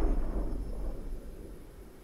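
Deep rumble of a boom sound effect dying away, fading steadily over two seconds.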